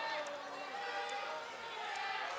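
Faint voice of a man talking over the steady murmur of an arena crowd.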